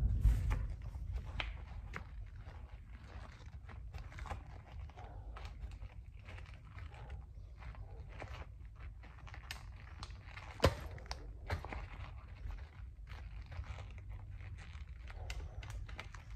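Quiet rustling and scattered small taps and clicks from someone moving about and handling things close to the microphone, with one sharp knock about two-thirds of the way through.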